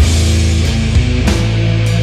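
Sludge doom metal: heavily distorted guitars and bass holding low chords, with drums and repeated cymbal crashes.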